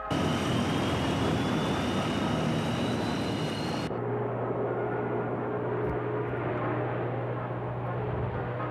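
Tupolev Tu-142 maritime patrol aircraft's four turboprop engines running loud. For the first four seconds a thin whine slowly rises in pitch over dense engine noise. The sound then changes abruptly to a steady low drone as the aircraft takes off.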